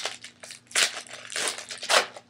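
Trading card pack wrapper crinkling in several short bursts as it is handled and torn open.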